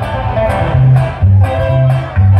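Live band playing an upbeat dance tune on amplified guitars over bass and drums, with a steady beat and bright guitar melody.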